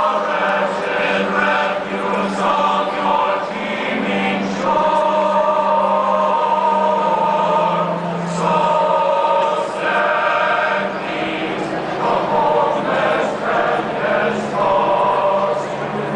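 A large men's glee club singing in harmony, holding long chords that change every second or two.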